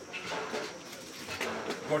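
Speech in Otjiherero among a seated gathering, with voices at a conversational level.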